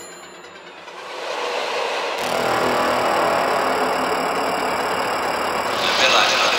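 Trance music in a breakdown: a rising noise sweep swells for about a second, then gives way to a dense rushing wash with held high synth tones and no clear beat.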